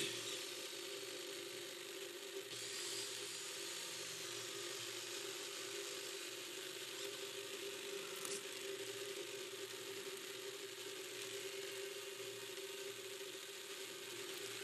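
Hobby servo motors in the 3D-printed InMoov humanoid robot whirring faintly as its arms and fingers move to grasp a ball, over a steady hum, with a single click about eight seconds in.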